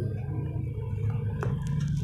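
Handling noise from the recording phone as the song ends: the guitar's ringing stops at the start, then a low hum is left. A short squeak comes about one and a half seconds in, with a few soft clicks near the end.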